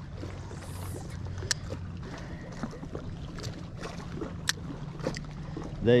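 Spinning reel being worked during a cast and retrieve, giving several sharp clicks, the clearest about a second and a half in and again about four and a half seconds in, over a low steady hum.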